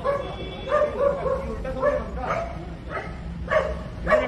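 A dog barking in short, high yelps, about six times.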